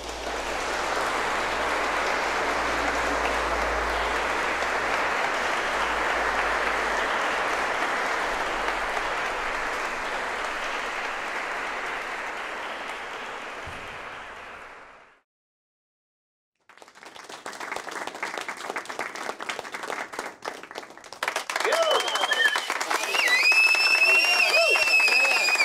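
Audience applauding, steady for about fourteen seconds, then fading and cut off abruptly. After a short silence a crackling noise starts, and music with held, gliding tones comes in near the end.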